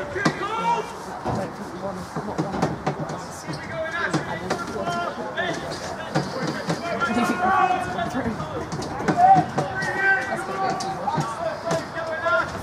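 People talking near the microphone, with a few sharp clicks.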